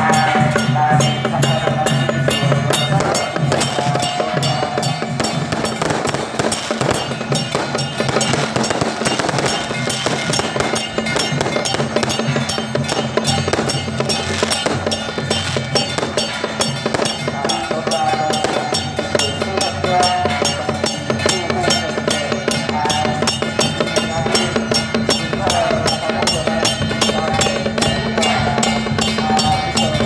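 Temple-procession music: dense, rapid percussion with a high wavering melody over it, mixed with the crackle of firecrackers.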